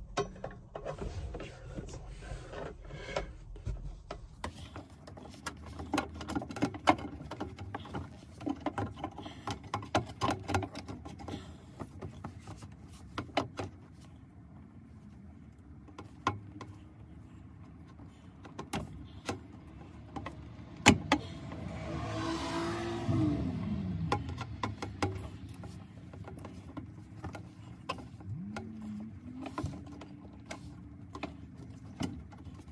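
Scattered metallic clicks, taps and knocks of hand tools and parts as the original shift rod coupling is worked back into a classic VW Beetle's floor tunnel. About two-thirds of the way in, a vehicle passes, its sound swelling and falling in pitch.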